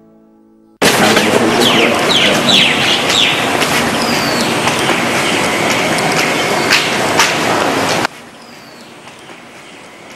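Birds calling in a run of short falling chirps over a loud, steady rushing noise with scattered crackles; the noise starts suddenly just under a second in and cuts off abruptly about eight seconds in, leaving a much quieter hiss with a few faint chirps.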